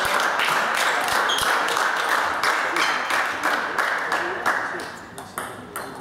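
Table tennis ball bouncing and clicking many times on the table and floor between points, over a steady band of hall noise that fades near the end.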